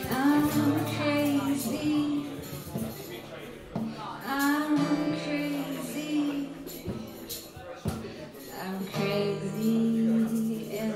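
A woman singing to her own strummed acoustic guitar, in long held notes. Two sung phrases are separated by a pause, and a third begins near the end.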